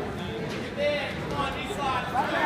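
Spectators' voices at a wrestling match: several people talking and calling out at once over a steady crowd murmur.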